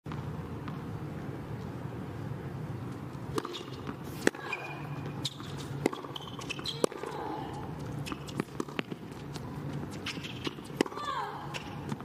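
Tennis ball being struck by racquets and bouncing on a hard court during a rally: a run of sharp pops, irregularly spaced a fraction of a second to about a second apart, from about three seconds in until near the end, over a steady low background murmur.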